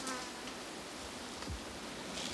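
A flying insect buzzes briefly right at the start, dropping slightly in pitch. After that only a steady soft hiss of outdoor background remains.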